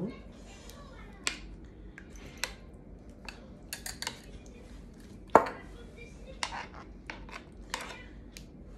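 A metal spoon tapping and scraping against a pan while spreading tomato sauce over meatballs and potatoes: scattered light clicks, with one sharper knock a little past the middle.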